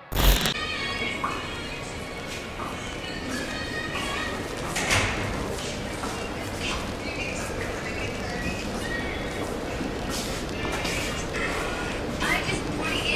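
Busy indoor background: faint, indistinct voices and music over a steady hubbub, with a few scattered knocks or footsteps and a short loud burst at the very start.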